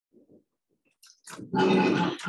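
Near silence in the lecture room with a couple of faint soft sounds, then about one and a half seconds in a man's voice starts up loudly, the opening of a spoken question.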